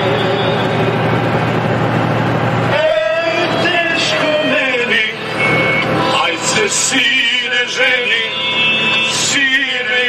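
A recorded folk song plays, with a man singing along in the cab of a moving truck over the truck's running engine. About three seconds in, the steady engine drone drops back and his wavering, vibrato-laden singing comes to the fore.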